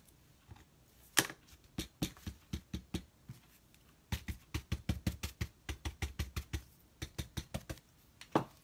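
Paintbrush pounced up and down onto glued paper on a clipboard: light taps, scattered at first, then a steady run of about five a second from about halfway in.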